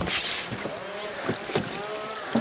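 Honda Rubicon ATV's single-cylinder engine revving up and down while it crawls over rocks and logs, with several sharp knocks and clatters from the machine and its load.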